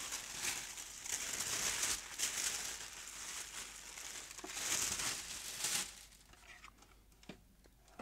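Thin white protective wrapping crinkling and rustling in irregular bursts as it is pulled off a new radio. It fades after about six seconds, leaving a few light handling clicks.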